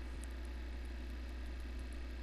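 Steady low electrical hum with a faint even hiss under it, unchanging throughout: the background noise of the recording setup, with no distinct event.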